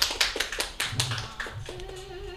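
A few people clapping in a small room, the claps thinning out after about a second and a half.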